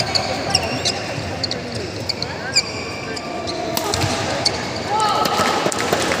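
Badminton rally in a large hall: a string of sharp racket strikes on the shuttlecock and short shoe squeaks on the court floor, with voices in the background that grow louder near the end.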